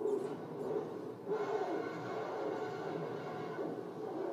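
Animated film soundtrack playing through room speakers: a dense, continuous wash of sound with no clear speech in it.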